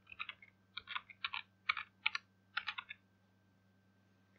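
Typing on a computer keyboard: quick runs of keystrokes in small clusters for about three seconds, then stopping, over a faint steady low hum.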